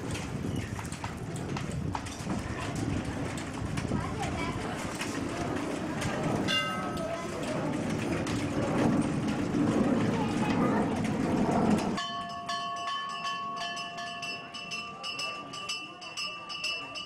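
Busy background noise with a murmur of voices and a brief high tone about six and a half seconds in. At about twelve seconds it changes abruptly to several steady ringing tones with light clicks.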